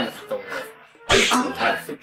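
A man's sudden, loud, sneeze-like vocal outburst about a second in, after a quiet moment.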